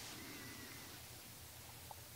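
Faint room tone with a low hum, and a faint thin high tone lasting under a second near the start.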